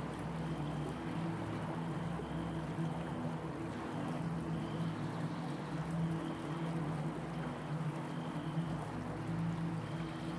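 Quiet ambient meditation backing: a sustained low drone of held tones over a steady hiss of running water, with faint short high tones recurring about once a second.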